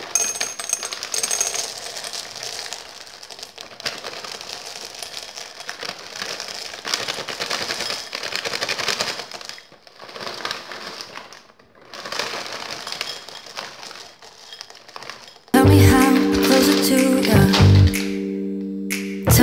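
Small hard dark chocolate drops pouring from a bag into a glass bowl: a dense rattle of pieces clicking on glass and on each other, with a few short pauses. Louder background music starts near the end.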